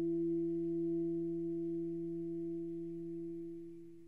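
Two tenor saxophones holding a soft, steady low note in octaves, with almost no breath noise, that dies away near the end.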